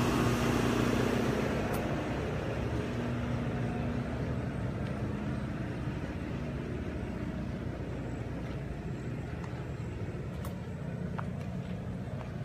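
A steady low mechanical hum, like a running engine, fades over the first two seconds. After it comes a steady outdoor rumble like road traffic.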